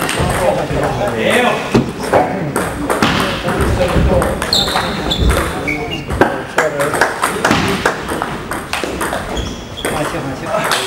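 Table tennis balls clicking repeatedly off bats and the table, with irregular sharp ticks scattered through.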